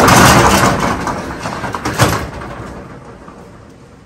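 Corrugated steel roll-up storage unit door being pushed open, rattling loudly as it coils up, with a bang about two seconds in as it reaches the top, then dying away.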